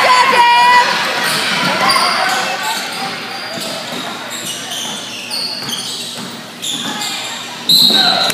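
Basketball game on a hardwood gym floor: sneakers squeaking and the ball bouncing as players run the court, with spectators' voices echoing in the hall. The activity is loudest in the first second, and a short high steady tone comes in near the end.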